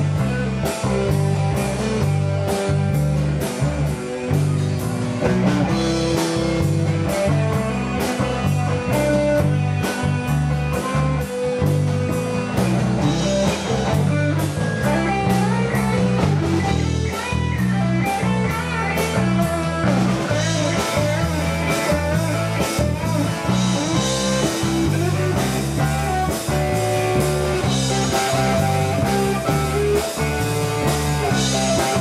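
A live rock band plays loudly and steadily with no singing: electric guitars over a bass line and a regular drum beat.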